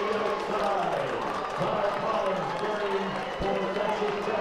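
Stadium crowd noise during a running race, with a man's voice over it.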